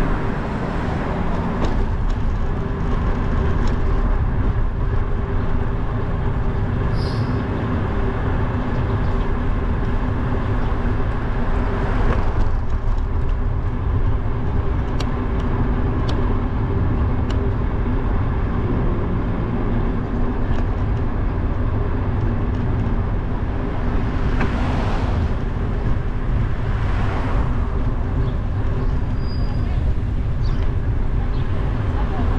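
City street traffic: a steady low rumble with engine hum, swelling a few times as vehicles pass.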